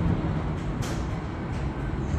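Steady rumble of city street traffic heard from high above, with a brief hiss a little under a second in.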